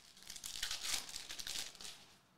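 A foil trading-card pack being torn open by hand, the wrapper crinkling and crackling for about two seconds before it stops.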